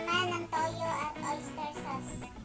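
Background music with a high melody line that glides up and down in pitch.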